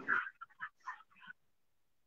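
Choppy, breaking audio from a live video call: a hiss cuts off, a few short clipped fragments follow, then the audio drops to dead silence. This is typical of a poor internet connection.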